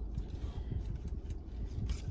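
Steady low rumble of a car cabin, with light rustling and a few soft clicks as clothing and its hangtag are handled.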